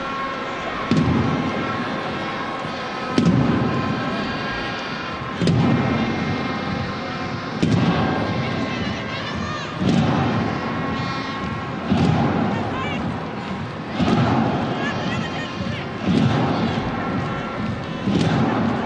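Football stadium crowd noise, with a supporters' drum beating slowly and evenly about once every two seconds over the voices in the stands.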